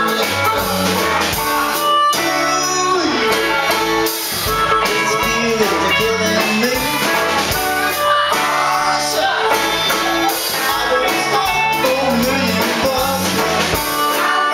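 Live band playing a song: drum kit and electric guitars, with a man singing.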